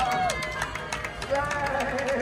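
Voices whooping: long held calls that slide down in pitch, over a quick patter of clicks, with some music underneath.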